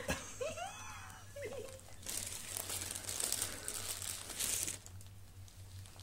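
A short laugh, then a crinkling, rustling noise lasting about three seconds.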